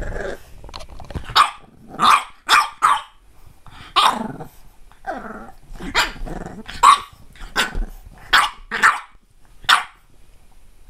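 French bulldog puppy barking in about a dozen short, sharp barks at irregular intervals, with growling between them.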